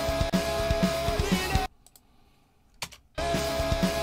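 Playback of a drum cover recording, a rock song with a drum kit played over it. It plays for under two seconds, stops abruptly, and after a pause with a single click it restarts the same passage.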